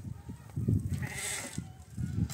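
A shovel blade scraping into a pile of loose gravel, once, from about half a second in to just past one second, over irregular low rumbling.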